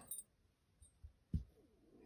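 A few faint small clicks and a soft low knock as the jet needle is pushed out of the carburettor's round throttle slide and handled.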